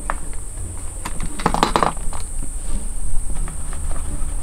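A few soft clicks and taps of small makeup items being handled, with a brief cluster of them about a second and a half in, over a steady low hum and hiss.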